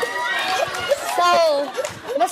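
Lively, high-pitched voices exclaiming and talking over one another.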